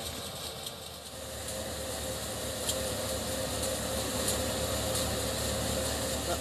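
Tractor-driven paddy thresher running steadily while rice sheaves are fed in: a continuous low machine hum with a steady mid-pitched whine.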